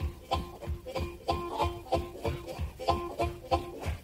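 Instrumental break in a vintage country blues recording: guitar playing short plucked notes to a steady beat, about three a second, between sung lines.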